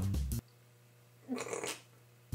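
Background music cuts off suddenly, and about a second later comes one short vocal sound lasting about half a second.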